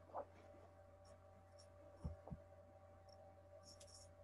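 Near silence: room tone with a faint steady hum, broken by two soft low knocks a little after two seconds in.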